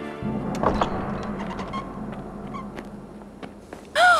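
A heavy wooden gate thuds shut with one deep boom about a quarter second in, followed by a couple of smaller knocks. Its ringing tail fades slowly over the next few seconds.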